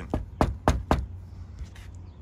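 Knuckles knocking several times in quick succession on the frame of a screen door.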